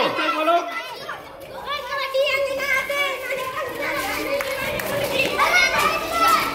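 Children's voices during a kabaddi raid: a girl's long chanting call held on one pitch, the raider's cant, with other children shouting and calling around her.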